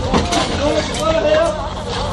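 People shouting and calling out, with pitched raised voices, over a steady low rumble.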